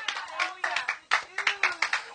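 Hands clapping in a quick, irregular run of claps, in a congregation's response to the preaching, with a faint voice under it.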